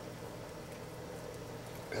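Quiet, steady room tone with a faint low hum and no distinct sound event.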